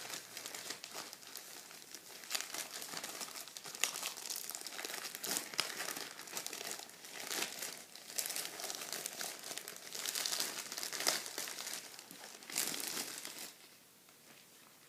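A thin clear plastic bag crinkled by hand, together with glossy paper sales flyers rustling: a continuous crackling full of sharp little clicks. It starts suddenly and eases off near the end.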